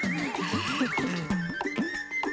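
Comic background music: a bouncy low plucked line repeating about four notes a second, under a warbling whistle-like glide that climbs in pitch during the first second.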